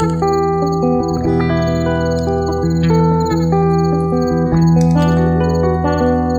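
Instrumental guitar music without singing: ringing, sustained guitar notes changing every second or so over a steady low drone.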